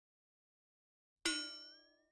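A single bright metallic ding struck about a second in, ringing out and fading within about a second, one of its tones sliding upward as it dies away: a logo-reveal sound effect.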